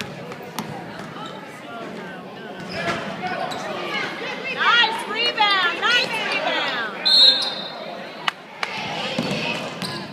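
Basketball game on a hardwood gym floor: the ball bounces and sneakers squeak in quick chirps as players move. About seven seconds in, a referee's whistle blows once, briefly, stopping play. The voices of players and crowd echo in the hall.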